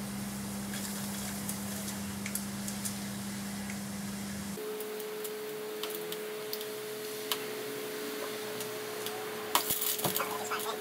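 Low mains hum from the transformer supply, with faint crackling from the overheating, smoking D-cells. About four and a half seconds in, the hum cuts off suddenly and a steady high whistle takes over, the kind of whistle these cells give as they vent before going high resistance. Sharper crackles and pops come near the end.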